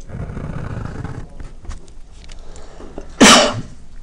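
A felt-tip marker is drawn across paper with a soft scratching in the first second. About three seconds in, one short, loud sneeze.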